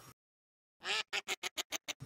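Dead silence for a moment, then an edited sound effect of about eight short, sharp bursts in quick succession, coming faster toward the end, with dead silence cut between them.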